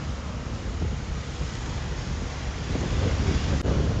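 Wind buffeting the microphone of a moving scooter over a low rumble of engine and traffic noise, growing a little louder near the end.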